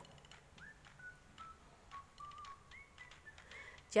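Quiet room tone with a series of short, faint whistle-like tones at shifting pitches, some sliding slightly upward, and a few faint clicks.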